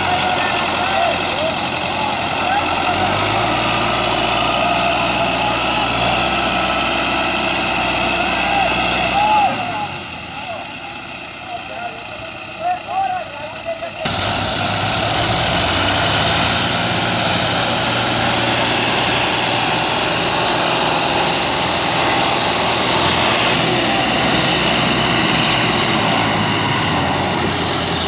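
Diesel tractor engines running while hauling a heavily loaded trolley, with men's voices over the first half. About halfway through the sound changes suddenly to a louder, steadier engine drone.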